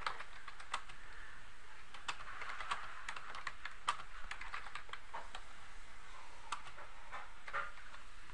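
Computer keyboard typing: a run of irregular key clicks as a sentence is typed, over a steady faint hiss.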